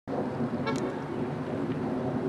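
Street traffic noise, steady and moderate, with one brief high beep less than a second in.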